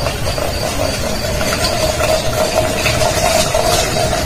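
Hot water poured in a thin stream from a cast-iron kettle into a glass tea pitcher through a metal strainer: a steady trickling splash that holds throughout. Beneath it runs a steady hiss and a faint high chirp repeating about three times a second.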